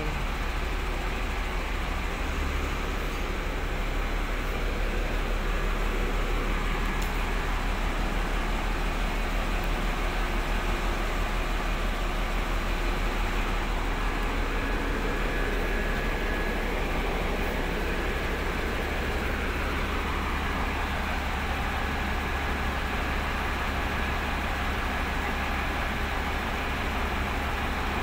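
Large diesel bus engine idling steadily, a constant low hum with even mechanical noise over it.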